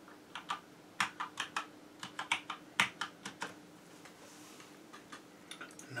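Typing on a computer keyboard: a quick, uneven run of key clicks for about three seconds, then a pause with a few light taps near the end.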